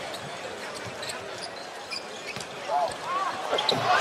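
Live basketball game sound from courtside: a ball bouncing on the hardwood floor over a low arena crowd hum, with scattered short squeaks and a few faint shouts about three seconds in.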